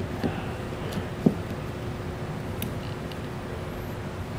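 Quiet shop room tone with a steady low hum, and a few small clicks and taps of alarm wire leads being handled and connected, the sharpest about a second and a quarter in.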